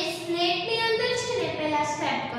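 A woman's voice in a drawn-out, sing-song delivery, with held notes that step up and down.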